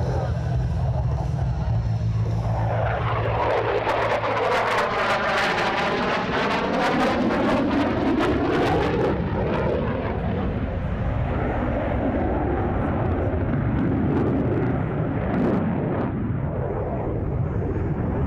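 F-16 fighter jet's single turbofan engine making a pass. The jet noise swells to a sweeping whoosh from about three to nine seconds in, then carries on as a steady rumble.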